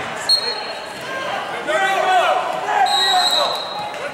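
Referee's whistle blown twice, a short blast just after the start and a longer one near the end, over shouting voices in a gym.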